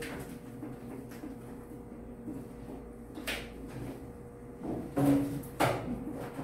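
Handling noise at a lecture desk: a few light knocks early on and a louder cluster of knocks and rustling near the end, over a steady faint hum.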